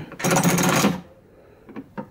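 Metal screw hold-down clamp rattling and clicking for just under a second as it is handled over the aluminium fence of a miter-saw table. A couple of light clicks follow near the end as it is seated in its fitting on the fence.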